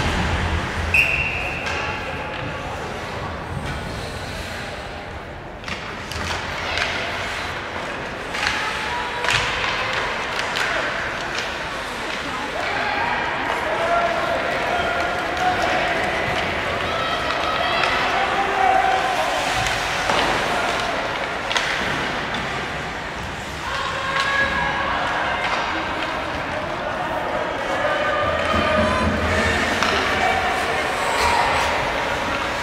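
Ice hockey game sounds in an arena: sticks and puck knocking and thudding against the boards, with voices of spectators and players calling out throughout.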